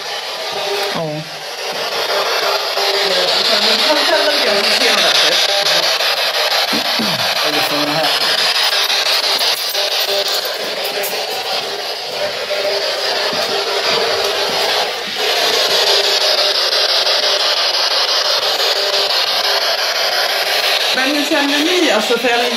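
Loud, steady static hiss with a thin, small-speaker sound and almost no bass, with faint fragments of voices drifting in and out of it.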